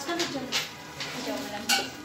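Quiet, broken talking in a classroom, with a few short clicks and scrapes in between.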